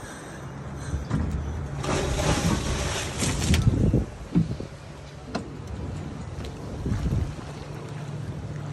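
A scuba diver rolls backward off the side of a dive boat: a loud splash into the sea about two seconds in, lasting under two seconds. A steady low hum from the boat's idling engine runs underneath, with a few small knocks near the middle.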